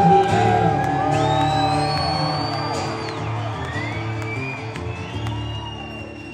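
Solo acoustic guitar strummed in a live country song, growing quieter toward the end, with long whistles and whoops from the audience over it.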